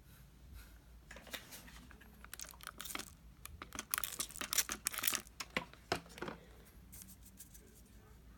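Clear plastic film on a paint palette crinkling and rustling as it is handled, in irregular crackly bursts that are busiest around four to five seconds in.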